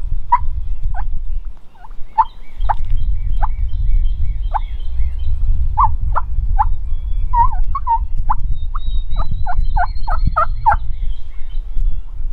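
Wild turkey yelping: single short yelps about a second apart, then a quicker run of about seven yelps near the end, over a low wind rumble on the microphone.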